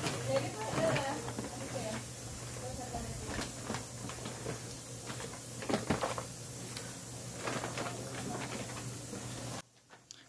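Paper rustling and crinkling in short irregular crackles as a stack of panela (raw cane-sugar) blocks is wrapped in a brown paper sack, over a steady low hum.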